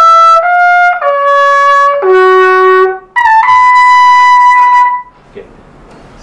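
Trumpet playing a phrase: a few notes stepping downward to a low note, then a leap up to a long held high note that stops about five seconds in.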